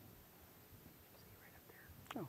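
Near silence: room tone, with a faint voice in the second half.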